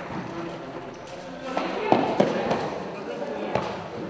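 Indistinct voices talking in the background, broken by a few sharp knocks: two close together about two seconds in and one more near the end.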